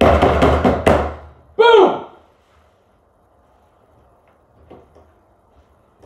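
A loud, noisy burst with sharp knocks and a low rumble for about a second, then a man's short exclamation falling in pitch, then near quiet.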